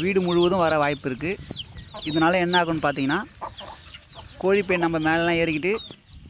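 Chicken calling: three drawn-out calls of about a second each, steady in pitch with a wavering quality.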